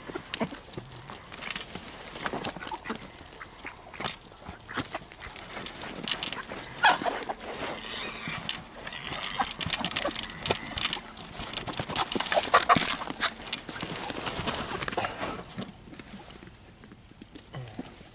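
Farm animals eating corn and nosing about right at the microphone: a dense, irregular run of crunches, clicks and knocks, with a few short animal calls.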